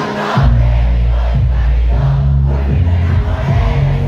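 Live concert music through an arena PA, with deep bass notes held about a second each, and a large crowd's voices over it.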